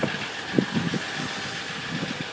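A vehicle engine idling steadily, with a few soft knocks about half a second in.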